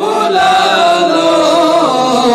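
A solo male voice singing a naat, the Urdu devotional song in praise of the Prophet, in a chant-like style. He holds long, slowly wavering notes with no break.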